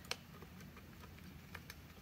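A few faint, light clicks of diagonal cutters and steel mechanic's wire being handled while the cutters are set on the wire ends.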